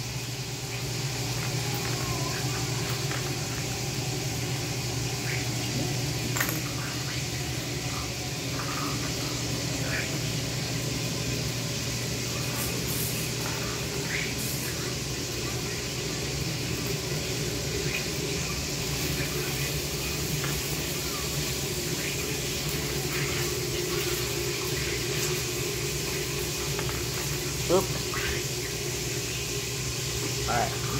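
Dishwasher running, a steady rush of spraying water over a low, even hum of its motor. A few light clicks of plastic Lego Technic pieces being handled.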